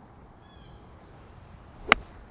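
A golf iron striking the ball on a short, easy swing: one crisp click near the end, the sound of a clean, well-centred strike.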